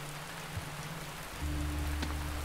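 Steady rain hiss, with a low sustained note of film score underneath that swells into a deeper drone and a held higher tone about a second and a half in.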